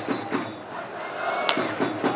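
Crack of a baseball bat hitting a pitched ball, a single sharp strike about one and a half seconds in, over the steady murmur of a stadium crowd.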